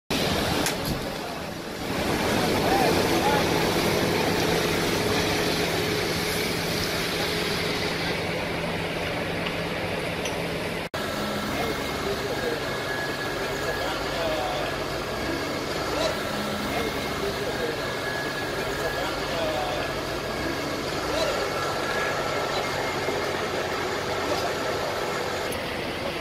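A fire hose spraying water onto a burning car over the steady drone of a running fire engine, with men's voices talking at times. The sound drops out for an instant about eleven seconds in, and the engine hum changes pitch after it.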